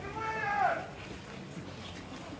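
A single drawn-out vocal call, about a second long, rising and then falling in pitch, over a low background of people.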